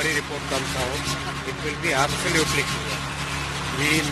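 A steady low engine hum running without change, under scattered voices of the surrounding crowd.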